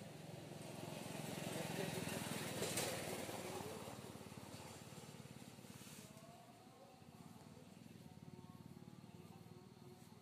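A faint motor vehicle passing at a distance: a low hum and noise that swell to a peak about two to three seconds in and then fade away.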